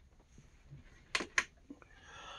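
Two sharp clicks about a quarter second apart, a little past the middle, followed by a fainter tick: a light switch being flipped to turn on a ceiling light.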